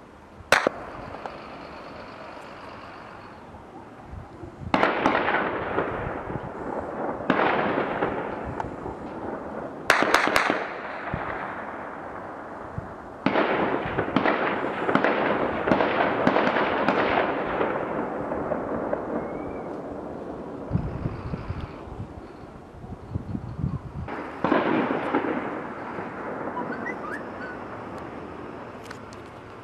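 A series of loud blasts, about six, each rolling on as a long echo that takes several seconds to die away, with stretches of rapid crackling bursts in the middle and again near the end.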